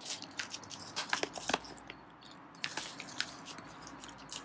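Small pouch of silver vine being handled and opened: an irregular string of soft crinkles and small clicks.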